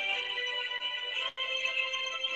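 Background music of soft, held tones with no speech over it, briefly dipping about a second and a half in.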